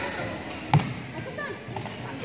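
A single sharp impact during a badminton rally, about three quarters of a second in, ringing briefly in a large sports hall over a background of spectator chatter.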